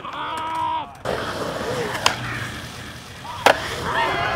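Skateboard wheels rolling on concrete, with a sharp clack about halfway and a loud slap of the board near the end. Voices call out in the first second.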